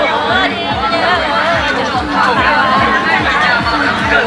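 A woman singing a Muong folk song (hát Mường) in a wavering voice, over crowd chatter and music from a loudspeaker with a steady low beat.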